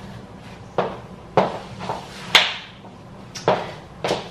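A few sharp knocks and taps, four in all at uneven spacing, the third the loudest with a short ringing tail: a person moving about on a hard floor.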